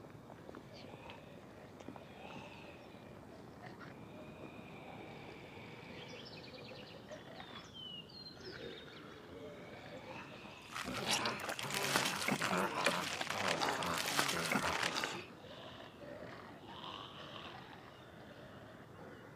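Quiet outdoor background with a few faint high chirps, then a loud, harsh, rasping noise that starts abruptly about eleven seconds in and stops about four seconds later.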